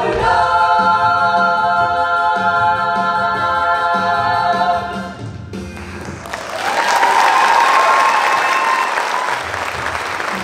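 Ensemble of young voices holding a final sustained chord over a steady beat, cut off about five and a half seconds in. Audience applause and cheering swell up right after, with one long high cheer over the clapping.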